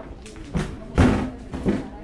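A few dull thuds inside a corrugated steel tunnel liner, the loudest about a second in, mixed with voices.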